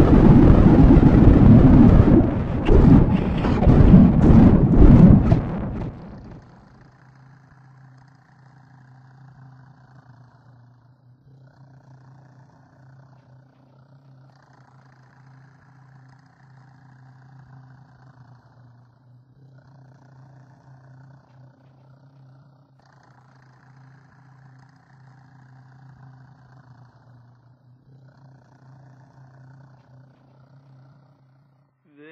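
Thunder, a loud rumbling peal with sharp cracks, that cuts off suddenly about six seconds in. It gives way to a faint steady low hum, with a higher tone fading in and out every few seconds.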